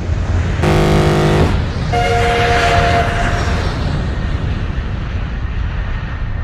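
Transport sound effects over a steady low rumble: a short, deep horn blast about half a second in, then a higher horn or whistle sounding a chord of several notes at about two seconds. The rumble fades out near the end.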